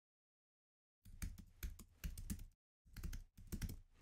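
Typing on a computer keyboard: a quick run of keystrokes starting about a second in, a brief pause, then a second run.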